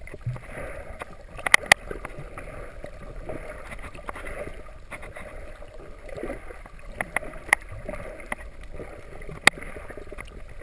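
Underwater sound picked up by a snorkeler's camera: a steady rush of moving water, broken by a few sharp clicks here and there.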